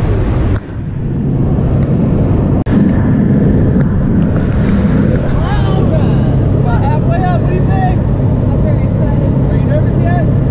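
Steady drone of a small propeller plane's engine heard from inside the cabin in flight. The sound drops out briefly twice in the first three seconds.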